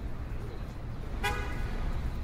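A car horn gives one short toot about a second in, over a steady low rumble.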